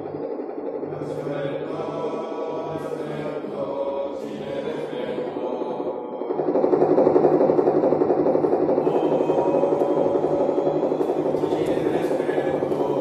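Live experimental electronic music: a dense drone of layered, sustained tones that swells noticeably louder about halfway through.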